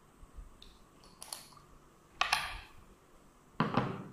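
Plastic screw cap being twisted off a glass ink bottle: three short scraping clicks, spread over a few seconds.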